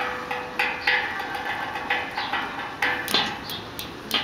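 Percussion instrument struck repeatedly in an uneven pattern, about two or three hits a second, each hit ringing with a pitched, metallic tone; one low note keeps sounding under the strikes.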